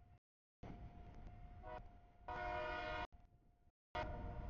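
Diesel freight locomotive's air horn sounding at a grade crossing, a short toot then a louder blast of under a second, over the low rumble of the train. The sound cuts in and out with brief gaps.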